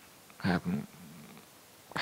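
A man's voice through a microphone: one short spoken syllable about half a second in, then a brief low hummed 'mm' in a pause between phrases.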